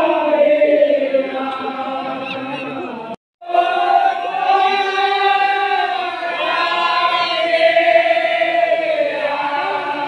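A large group of voices chanting together in long, drawn-out held notes. The sound cuts out completely for a moment about three seconds in, then the chanting carries on.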